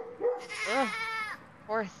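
Nigerian dwarf doe in labour crying out as she pushes out her first kid: one long strained bleat starting about half a second in, then shorter cries near the end.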